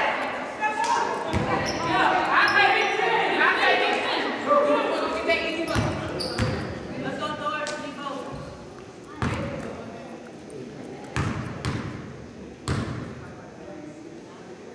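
A basketball bounced on a hardwood gym floor, single echoing thumps a second and a half to two seconds apart in the second half, as a shooter bounces the ball at the free-throw line. Voices call out over the first half.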